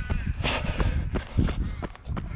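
Running footsteps on an asphalt path with the runner's heavy breathing, two louder breaths about half a second and a second and a half in, over a low rumble of wind on the microphone.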